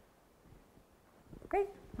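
Near silence in a room, then a single spoken word with a rising-falling pitch near the end.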